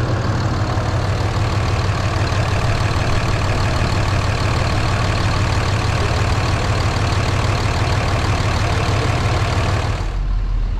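Diesel pickup truck engine idling steadily, heard close up under the open hood while it serves as the donor vehicle for a jump-start through jumper cables.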